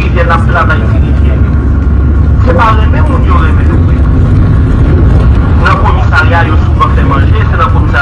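A voice speaking in short phrases with pauses between them, over a loud, steady low rumble.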